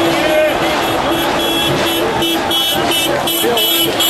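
Road traffic passing, with people's voices around it and a steady tone that keeps breaking off and starting again.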